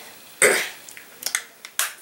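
A person's short cough about half a second in, followed by a few faint clicks.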